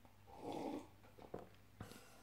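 A short breathy exhale through the nose after a swallow of beer, followed by a few light clicks.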